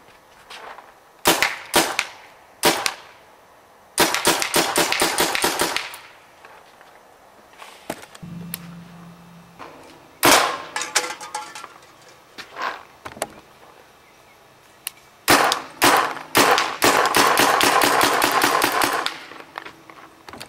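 CO2-powered Tippmann Custom Pro paintball marker firing: a couple of single shots, then a rapid string of shots lasting about two seconds, scattered shots, and a longer rapid string of about four seconds near the end.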